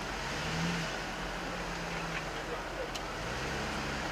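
Jeep Wrangler engine running at low revs, swelling slightly a couple of times, as the Jeep tries to bump its way over a muddy mound.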